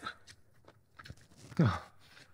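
A man chewing a mouthful of fried eggplant, with faint mouth clicks, then a short appreciative 'mmm' that falls in pitch about one and a half seconds in.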